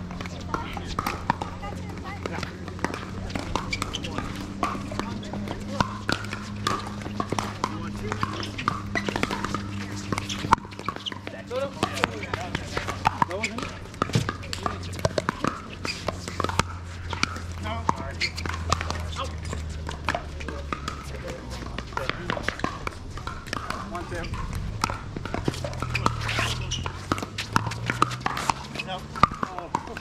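Pickleball paddles hitting plastic balls in sharp pops, from this court and the courts around it, with players' voices in the background. A low hum runs underneath through much of it.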